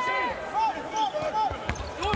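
A basketball being dribbled on a hardwood arena court, heard under broadcast commentary.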